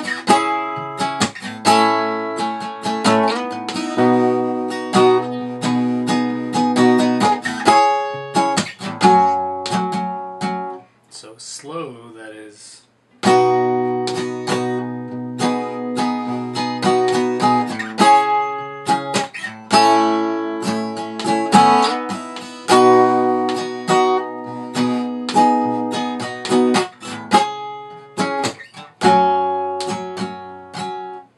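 Acoustic guitar played fingerstyle: the fingers pick the notes of the chords while the thumb strikes the low string percussively between them. Playing stops briefly about eleven seconds in, then picks up again.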